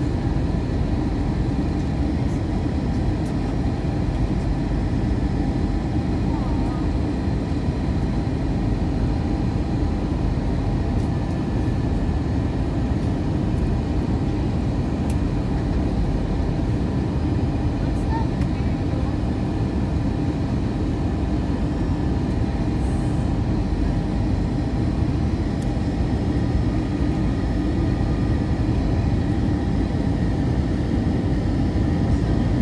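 Airbus A321 cabin noise on final approach: a steady low rumble of airflow and engines, with faint steady engine tones above it.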